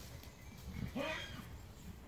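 A faint, short horse call about a second in, from horses crowding together nose to nose.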